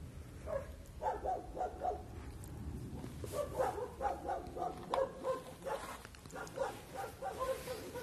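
A man sobbing: repeated short, high-pitched, whimpering cries, several a second, as he weeps.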